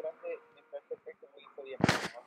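Faint, low speech, then one short, sharp thump near the end.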